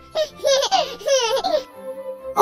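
A young child laughing happily in several short bursts, over soft background music.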